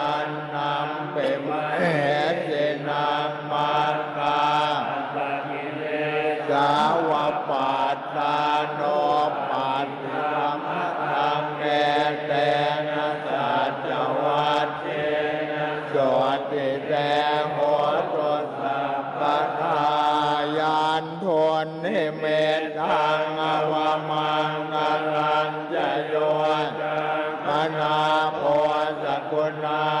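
A group of Thai Buddhist monks chanting Pali blessing verses in unison, a continuous drone held on a near-steady pitch.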